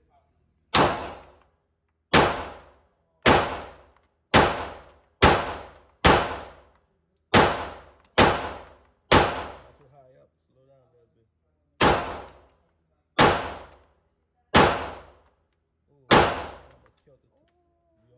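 Glock 19 Gen 5 9mm pistol fired thirteen times in slow aimed fire, about one shot a second, with a pause of nearly three seconds after the ninth shot. Each shot rings off the walls of the indoor range and dies away within a second.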